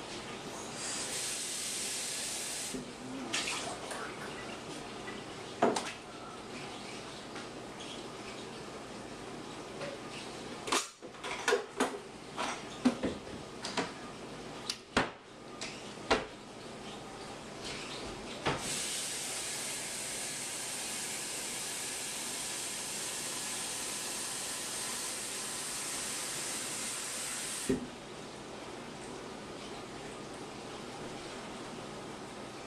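Kitchen faucet running briefly, then a run of clinks and knocks of glassware and dishes, then the faucet running steadily for about nine seconds into a glass measuring cup and shut off suddenly near the end with a click.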